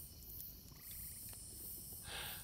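Faint chorus of crickets chirping steadily in a high-pitched, evenly pulsing trill, with a brief extra chirp about a second in.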